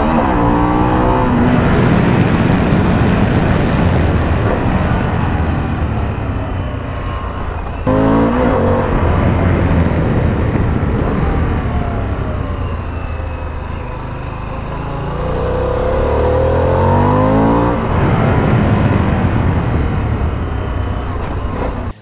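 Harley-Davidson Pan America 1250's V-twin engine pulling hard on the road, its pitch climbing several times as it revs up through the gears, over a steady rush of wind.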